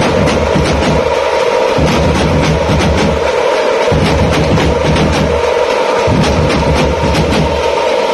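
Tamate frame drums and big bass drums played together by a street drum troupe in a fast, loud tapanguchi beat. The frame-drum strokes come thick and continuous, and the deep bass drum comes in runs broken by short gaps every second or two.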